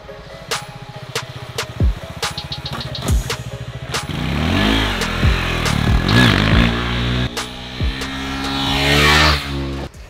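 KTM 390 Duke's single-cylinder engine comes in about four seconds in. It revs with its pitch rising and falling twice as the bike rides past, then climbs steadily as it accelerates near the end. A music track with a steady beat plays throughout.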